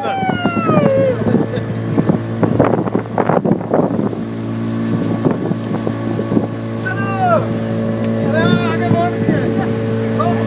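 A motorboat's engine runs at a steady drone while the boat is under way, with wind rushing on the microphone. Brief voices call out near the start and again near the end.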